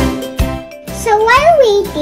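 Children's background music with a regular beat, fading out about half a second in. From about a second in, a young girl's voice follows in a sing-song tone.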